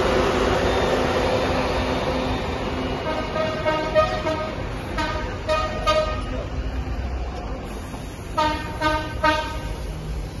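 A large coach bus running, with a loud hiss and rumble at first, then its horn sounding several short toots in groups: one about three seconds in, a pair around five seconds, and three more near the end.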